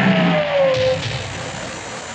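A small car braking to a stop with a tyre screech that slides down in pitch and ends about a second in, over the car's running noise.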